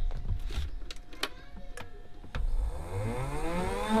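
A few clicks and knocks, then a Shoprider mobility scooter's electric drive motor starting up, its whine rising in pitch and settling steady near the end. The drive wheels are off the ground and turning freely, a sign that the newly fitted electromagnetic motor brake is releasing as it should.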